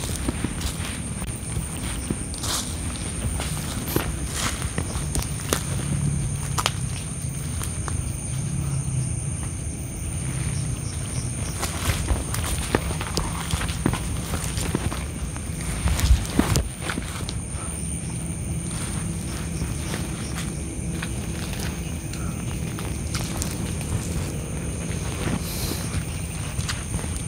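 Footsteps and rustling as people walk through dense undergrowth, with scattered clicks and one louder knock about two-thirds of the way through. A steady high-pitched drone runs behind it.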